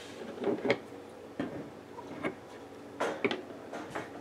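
Scissors snipping through a strand of crochet yarn, among a few soft clicks and rustles of hands handling the yarn and hook.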